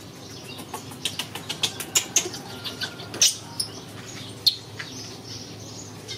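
Metal wire bicycle-style basket on a motorbike rattling and clicking as a baby macaque is put into it and clambers on the mesh: a quick irregular run of sharp rattles over a few seconds, the loudest about two, three and four and a half seconds in.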